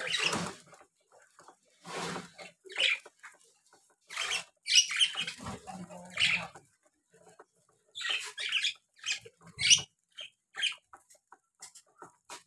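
A flock of budgerigars pecking and husking millet seed from a metal bowl: irregular clicks and short scratchy bursts, several a second at times, with brief pauses between.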